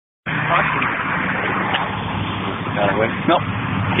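A moment of silence, then outdoor street noise from a handheld camera recording: a steady din of traffic and a running vehicle engine. A man says a short word near the end.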